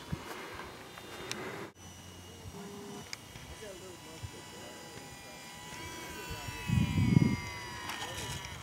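Faint, indistinct voices in the background over outdoor ambience, with a brief low rumble near the end.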